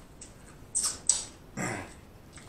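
Close-miked mukbang eating sounds: two sharp wet mouth smacks about a second in, the second the loudest, then a short low grunt of enjoyment that drops in pitch near the end.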